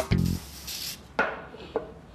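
A brief loud burst right at the start, then a few sharp knocks: one a little past a second in, a fainter one about half a second later.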